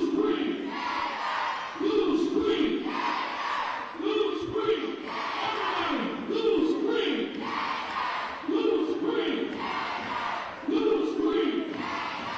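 A group of voices chanting in unison in a gym, a loud shouted beat roughly every second, with a few longer gaps.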